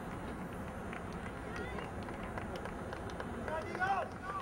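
Outdoor soccer-field ambience with distant, indistinct voices of players and spectators, and a louder call just before the end.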